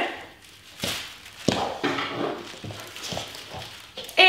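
A few knocks and taps: barefoot footsteps on a hard floor and a plastic step stool being picked up and carried, with the two sharpest knocks about one and one and a half seconds in.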